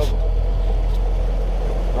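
A fishing boat's outboard motor running steadily under power as the boat is driven along, a constant low drone.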